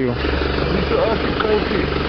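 Pickup truck's engine idling close by: a steady low rumble, with a faint voice over it.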